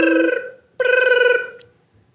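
Telephone ringing: two rings, each just under a second long, with a short gap between them.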